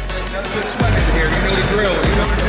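Electronic music with a heavy bass beat, over a basketball bouncing on a gym court.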